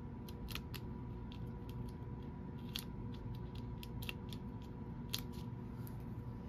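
Small, irregular clicks and light rustles of fingers pressing foam adhesive dimensionals onto a cardstock panel and handling the paper, over a faint steady hum.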